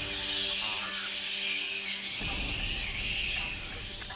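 Eerie background sound bed: a steady high-pitched hiss, with a low held droning chord during the first two seconds that then fades out.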